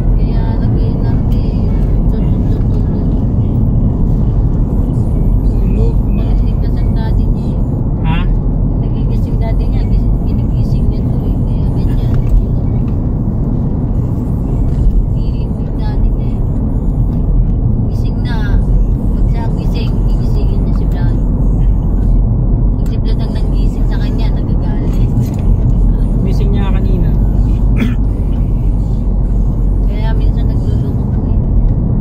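Steady low rumble of engine and tyre noise heard inside a moving car's cabin.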